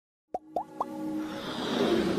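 Logo-intro sound effects: three quick plops, each rising in pitch, about a quarter second apart, followed by a swelling whoosh that builds up.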